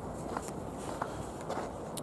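Footsteps of a person walking, faint steps roughly every half second to second, over a low rumble of wind on the microphone.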